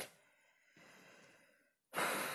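A man's breathing during a pause in speech: a short sharp catch of breath at the start, then a soft sigh out lasting about a second, and a louder breath beginning right at the end.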